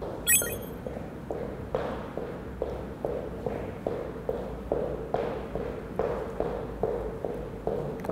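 Light jogging footfalls on a wooden floor, an even beat of about two to three steps a second.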